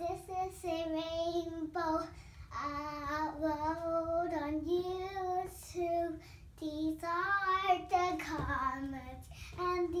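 A young girl singing a made-up song in long held notes, her pitch wavering slightly, with short breaks between phrases.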